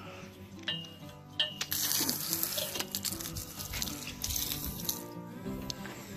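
Water running hard from a campground fresh-water standpipe spigot. It sets in as a steady hiss about one and a half seconds in and stops about four seconds later, over light background music.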